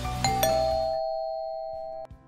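Two-tone doorbell chime: a higher note then a lower one, ding-dong, ringing on and slowly fading. Background music is playing under the first strike and drops away about a second in.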